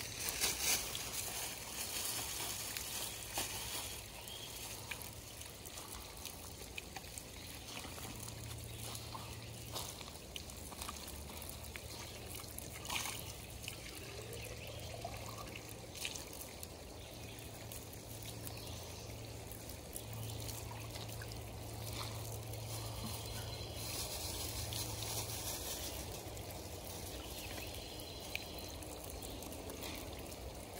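Spring water pouring steadily from metal pipe spouts and splashing onto wet boards and ground, with a few brief knocks along the way.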